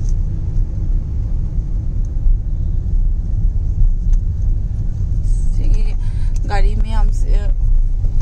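Steady low rumble of a car heard from inside the cabin while driving, engine and road noise. A voice speaks briefly near the end.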